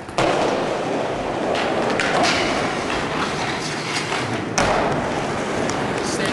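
Skateboard wheels rolling on wooden ramps, with a light knock about two seconds in and a louder board thud about four and a half seconds in.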